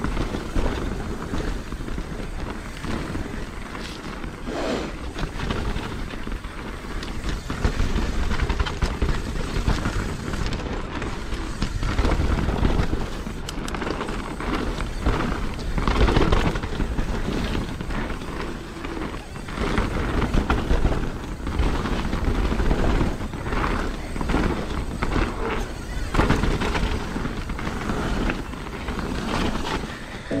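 Mountain bike rolling fast down a dirt and gravel trail: tyre noise over the gravel with frequent knocks and rattles from the bike over bumps, and wind on the microphone.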